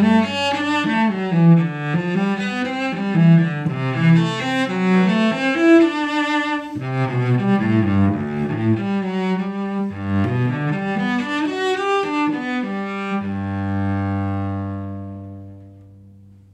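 Cello played with the bow: a moving melody, then a long low note held from about thirteen seconds in that fades away near the end.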